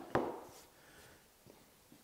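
A single sharp knock of something set down on the wooden workbench as the clamps and template come off the work, then quiet handling with one faint tick.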